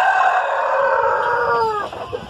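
Rhode Island Red rooster crowing: one long, held call that drops in pitch and breaks off near the end.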